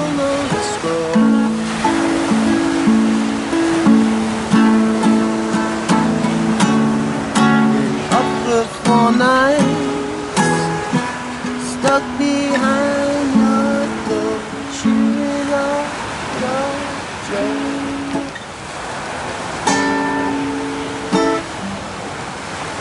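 Acoustic guitar played solo, picked notes and strummed chords in a wordless instrumental passage that grows sparser over the last few seconds.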